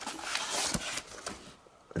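Rustling and handling noise from a fabric carrying case and plastic packaging being moved about in a cardboard box, with a soft knock about three-quarters of a second in. It dies away near the end.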